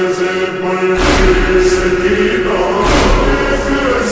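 A slowed-down, reverb-heavy noha (Shia lament): voices chanting long, held lines, with a heavy beat about a second in and again about three seconds in.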